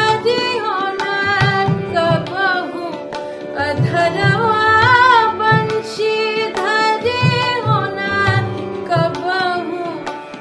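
A woman singing a Hindustani semi-classical song, her voice gliding and bending through ornamented phrases. Under her run a steady drone and the low rhythmic strokes of tabla accompaniment.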